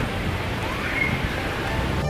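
Busy city street noise: a steady wash of traffic and passers-by, with wind rumbling on the microphone.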